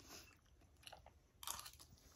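Faint chewing and crunching of food close to the microphone, with a short, louder crunch about one and a half seconds in.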